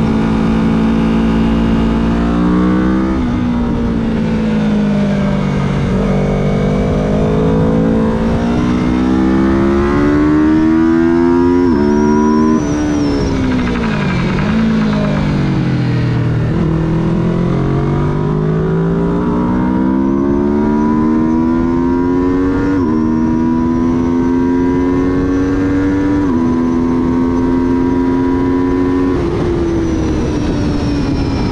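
Track motorcycle engine under hard acceleration, its pitch climbing through the gears with a sharp drop at each upshift, about three and six seconds in. Around halfway the throttle closes and the revs fall through downshifts into a corner, then the engine climbs again with upshifts near the end.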